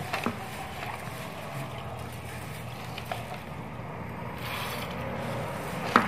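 Mung beans being washed by hand in a stainless steel bowl of water: a steady swishing of water with a few faint clicks of beans, getting a little louder in the last second or so.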